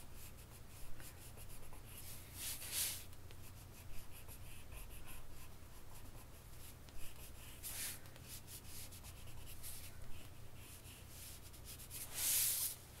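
Colored pencil scratching lightly on watercolor paper in many short strokes as it traces outlines, with a couple of louder scrapes.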